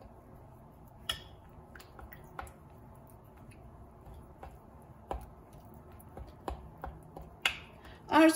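A metal spoon stirring thick poppy seed paste and oil in a glass bowl, with scattered light clicks of the spoon against the glass. The sharpest click comes about a second in.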